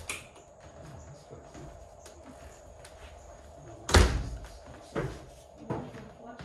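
A loud knock or thump about four seconds in, followed by two lighter knocks, over quiet room tone with a faint steady hum.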